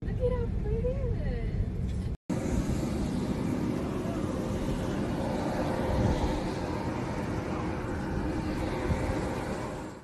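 Indistinct voices over a steady low rumble, like a vehicle interior recorded on a phone. The sound drops out briefly about two seconds in, where one clip cuts to the next.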